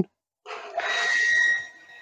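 A 0.75 kW cast-iron-impeller water pump switching on under its pressure switch as a shower valve is opened, with water hissing through the shower head and a steady high whine. The sound starts about half a second in, swells, and fades near the end.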